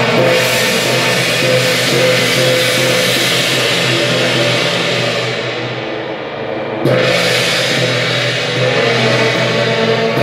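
Loud temple-procession music with drums, gongs and cymbals accompanying an Eight Generals troupe's dance. The brighter percussion fades back around five seconds in, then comes back with a sudden loud crash just before seven seconds.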